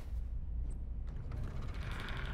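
Hushed stretch of a film trailer's sound design: a steady low rumble with a few faint ticks and creaks over it.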